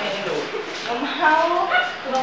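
Indistinct voices of several people talking in a classroom, in short stretches with brief gaps.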